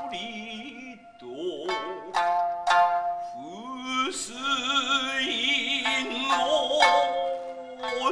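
Kiyomoto music: shamisen plucks ringing out under a singer's long, wavering held notes, with a brief lull about a second in.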